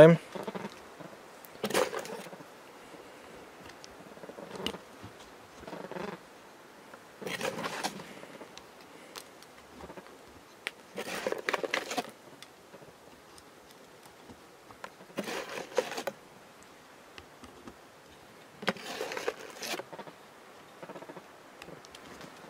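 Ruger Wrangler .22 LR single-action revolver being loaded: cartridges pushed one at a time into the free-spinning cylinder through the open loading gate. It makes about seven short bursts of small metallic clicks and rattles, a few seconds apart.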